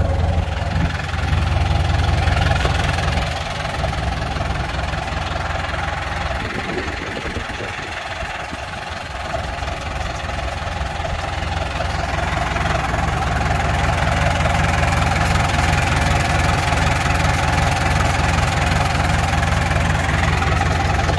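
A New Holland TS90 tractor's diesel engine idling steadily, very smooth. It drops a little in loudness for a few seconds in the middle, then runs on evenly.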